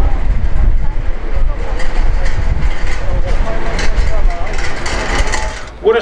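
Loud outdoor city street noise: a steady low rumble of traffic with indistinct voices mixed in.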